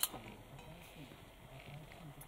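A single sharp click right at the start, then a faint, low murmur like distant voices.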